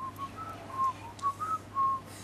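A person whistling a short tune: about eight quick clear notes that step up and down around one pitch.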